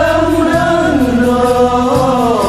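Acehnese song: a voice sings a melody of long, held notes that slide up and down, over a steady low instrumental accompaniment.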